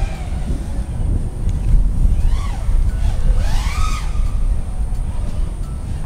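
A 5-inch FPV freestyle quadcopter with its motors flipped into a pusher layout, its motor whine heard from the ground, rising and falling in pitch twice near the middle as the throttle goes up and down. A heavy low rumble of wind on the microphone runs underneath.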